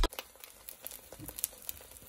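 Eggs and vegetables frying in a pan: faint, irregular crackling and popping.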